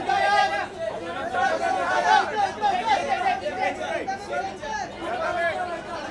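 Several photographers talking and calling out over one another, a busy chatter of overlapping voices.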